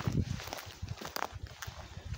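Footsteps walking over a bare forest floor of earth and fallen conifer needles, an irregular series of soft low thumps.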